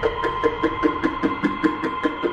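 Electronic synth intro sting: a fast ticking pulse about five times a second over held high synth tones, with a short two-note synth figure repeating underneath.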